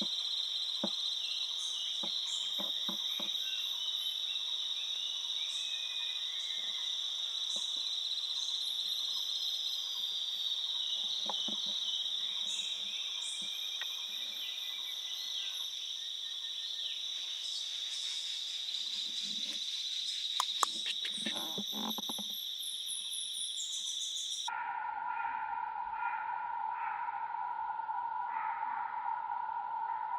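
Steady high-pitched drone of a forest insect chorus, with scattered faint clicks and ticks. About 24 seconds in, the sound cuts abruptly to a lower-pitched steady drone.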